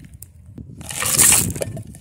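Rustling, rubbing noise right at the microphone, like a phone being moved and handled. It swells to its loudest about a second in.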